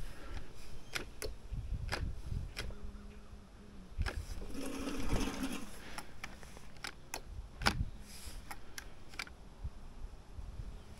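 Scattered light clicks and rattles from a Gardena 380AC cordless reel mower that is handled on the lawn while its motor will not run, with a short low hum about five seconds in.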